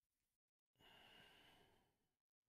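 Near silence, broken about a second in by a person's faint exhale lasting about a second.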